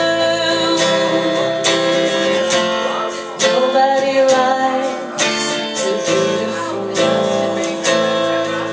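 Live acoustic blues: a woman strumming an acoustic guitar in steady strokes a little under a second apart while she sings, her voice most prominent around the middle.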